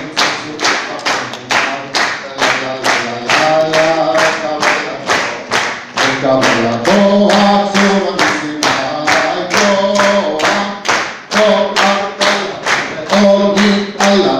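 An audience clapping along in a steady rhythm, about two to three claps a second, while a man sings a Shavuot song into a microphone.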